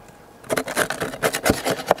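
The back of an old knife blade scraping hardened propolis off the end of a wooden beehive frame. Quick, rough scraping strokes start about half a second in.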